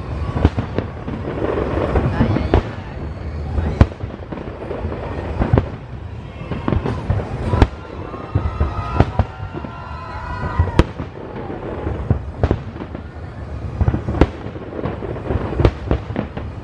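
Large aerial fireworks display: a constant run of sharp bangs at irregular intervals over a crackling haze, the loudest bang about four seconds in.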